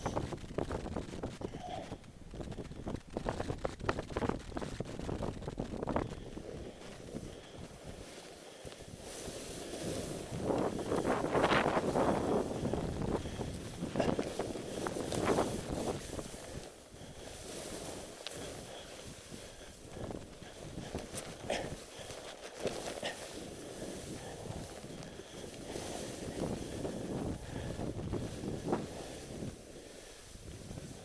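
Wind buffeting the microphone of a body-worn camera, over the hiss and scrape of a snowboard turning through powder snow, loudest about a third of the way in.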